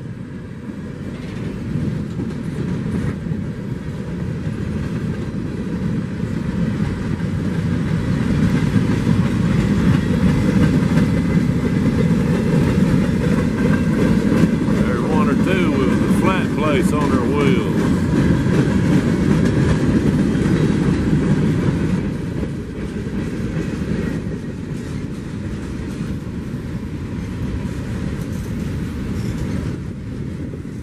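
Freight cars of a slow-moving train rolling past, a steady rumble of steel wheels on the rails that is loudest in the middle stretch.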